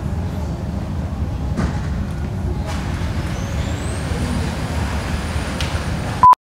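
A steady low rumble of background noise, with a few faint clicks and a thin high whine that rises about three seconds in and then holds steady.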